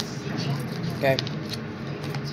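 Faint metallic jingling of chain bracelets as the hands shift a tarot deck, over a steady low hum, with a single spoken "okay" about a second in.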